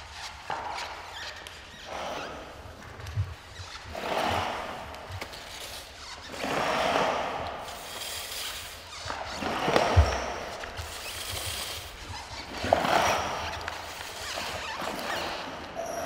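Amplified experimental noise performance: rough swells of noise rise and fall every two to three seconds through a small amplifier, with a few dull thumps, the loudest about ten seconds in.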